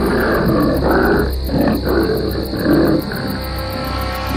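A tiger growling in a series of rough pulses that stop about three seconds in, over ominous background music.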